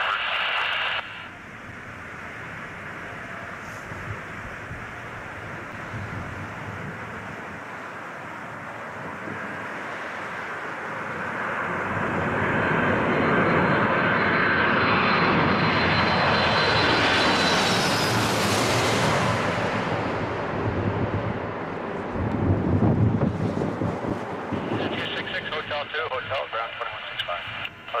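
Four-engine KLM Boeing 747 jet passing low overhead on final approach: the engine noise builds, is loudest about two-thirds of the way in with a high whine, then fades, with a low rumble near the end.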